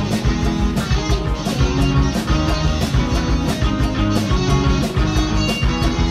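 A live rock band playing: electric guitars and bass guitar over a drum kit keeping a steady beat with cymbal hits.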